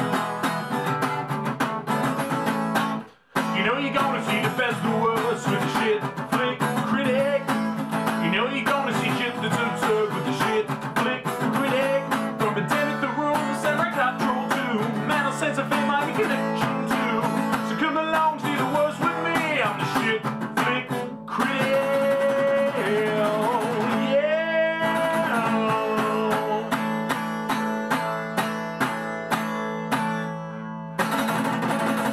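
A man singing along to his own strummed acoustic guitar. The music breaks off briefly, almost to silence, about three seconds in, then carries on.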